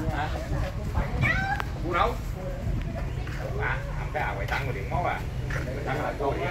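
Several people talking indistinctly in the background, with a few short calls that glide up and down in pitch.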